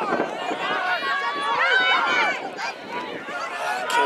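Several voices shouting and calling at once across a rugby pitch, players calling out during play, loudest about two seconds in.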